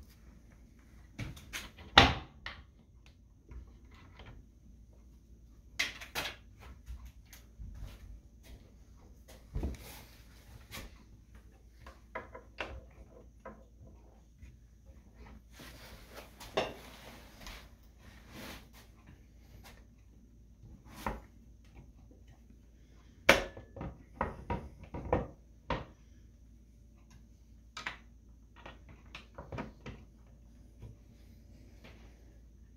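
Scattered knocks and clicks of a wooden kitchen cabinet being handled: the tilt-out tray front pressed and tapped into place and the door below opened and moved. The loudest knock comes about two seconds in, with a quick run of knocks later on and a brief rustle near the middle.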